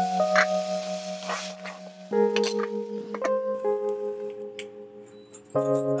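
Background music: sustained, bell-like keyboard chords that change to new chords about two seconds in and again near the end.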